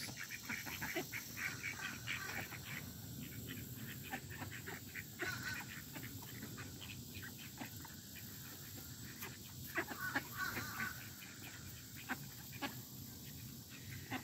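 Ducks and Canada geese foraging on mulch after a feeding: many faint clicks and rustles from bills and feet, with a brief soft call a little past the middle.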